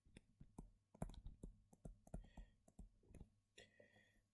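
Faint, irregular clicks and taps of a stylus on a tablet screen as digits are hand-written.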